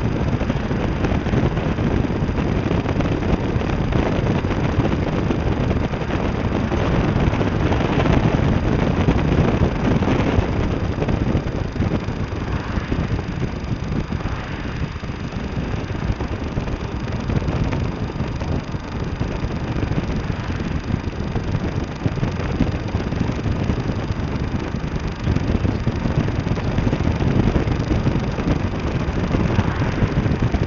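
Vehicle driving along, heard from inside the cab: steady engine and road noise with a rumbling low end.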